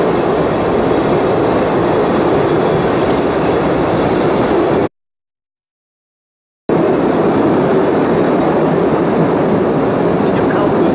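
Postojna Cave tourist train running through the cave, a steady loud rattling rumble of the cars on the rails. The sound cuts off abruptly about five seconds in and resumes unchanged about two seconds later.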